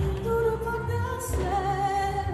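Live music: a woman singing long held notes with vibrato, with an orchestra accompanying her.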